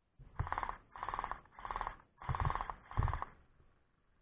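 Gel blaster firing five short full-auto bursts in quick succession, each a buzzing rattle of about half a second.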